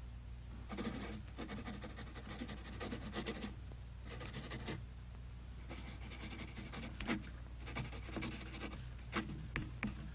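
A person panting and gasping in several breathy bursts, some lasting a few seconds, with a few sharp mouth clicks near the end, over a faint steady low hum.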